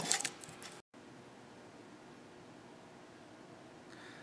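A few light clinks of glass jars and metal lids being handled, then an abrupt cut to faint, steady room tone.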